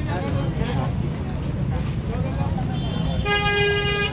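A vehicle horn honks once, a single steady note lasting under a second near the end. Underneath are a low steady traffic rumble and background voices.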